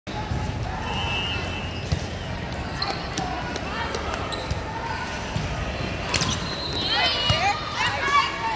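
Volleyball rally: a ball struck sharply, the clearest hit about six seconds in and a smaller one near two seconds, over the voices of players and spectators in a large hall.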